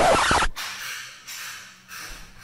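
A loud rushing burst lasting about half a second that cuts off suddenly, followed by faint room noise in a tire shop.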